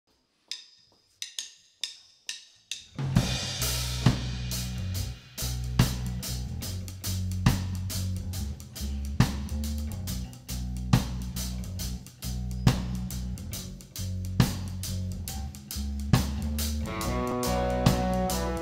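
Live indie rock band playing an instrumental intro: a few separate drum hits, then about three seconds in the drum kit and a deep, held bass line come in together, with a strong accent hit roughly every second and a half. Higher pitched notes join near the end.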